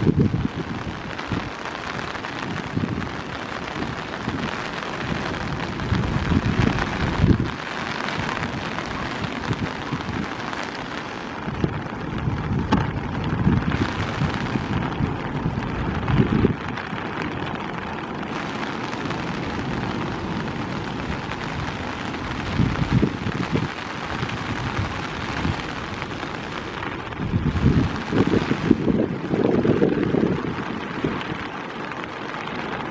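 Steady heavy rain, with irregular gusts of wind buffeting the microphone, strongest near the end.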